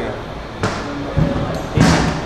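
Three dull thumps about half a second apart, the last the loudest, against background voices.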